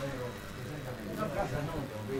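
Faint open-air ambience at a small football ground, with distant, indistinct voices of spectators and players.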